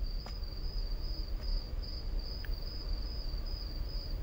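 A cricket chirping steadily, a high trill pulsing about twice a second, over a low background rumble. A faint click comes about a third of a second in.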